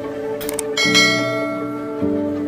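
Subscribe-button animation sound effect over background music: short mouse clicks about half a second in, then a notification bell chime that rings out and fades.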